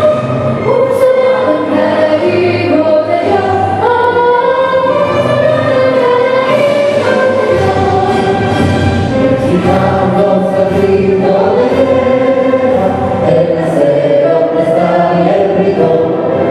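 Mixed vocal group of two women and two men singing a national anthem in sustained harmony through microphones.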